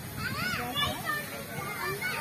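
Children's voices at play, calling and chattering, with a high, rising-and-falling shout about half a second in.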